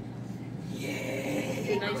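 A person's voice, starting about a second in and growing louder, with "nice" spoken near the end as praise for the dog.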